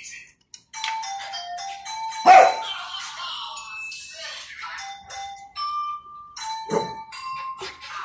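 Small dog whining in short high-pitched cries while begging for food, with two sharp barks, one about two seconds in and one near the end.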